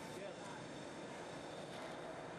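Faint, steady background noise, an even hiss with no distinct event in it.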